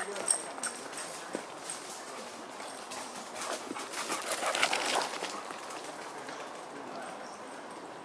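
Footsteps crunching on a dirt and leaf-litter trail as someone hurries along, the strides busiest and loudest about three to five seconds in.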